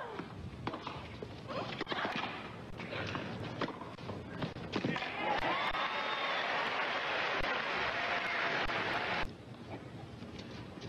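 A tennis rally: several sharp racquet-on-ball hits over the first five seconds. Then a stadium crowd applauds and cheers, which cuts off suddenly about nine seconds in.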